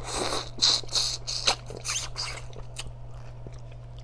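Close-up eating of seafood-boil crab: crab shell cracking and crunching with chewing, a quick run of sharp crackles in the first two seconds or so, then a few lighter clicks.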